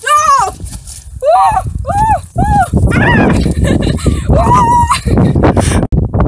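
A woman shouting a string of about six high, excited whoops, each rising and falling in pitch, the last one held longer. Wind rumbles on the microphone underneath from about two seconds in.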